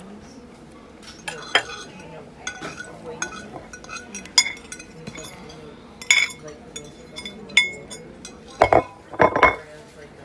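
Plates and cutlery clinking and knocking at a table, a string of short sharp clinks with brief ringing, as leftover food is packed into a to-go box; the loudest knocks come near the end.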